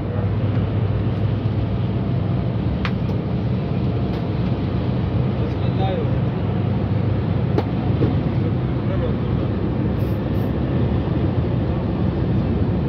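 Steady drone of a Yutong coach's engine and road noise heard inside the cab while cruising on a highway, with a couple of sharp clicks.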